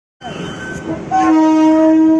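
Train running alongside on the next track, then a loud steady train horn note from about a second in, held to the end.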